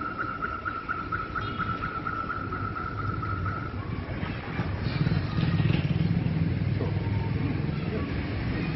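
A high, steady pulsing tone for the first few seconds, then the low rumble of a motor vehicle growing louder and passing by about halfway through.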